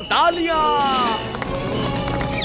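Cartoon voices crying out in a long falling exclamation over background music.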